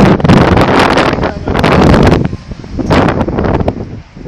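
Loud wind buffeting a handheld phone's microphone, in rushing surges with rustling handling noise as the phone is moved about; it eases off near the end.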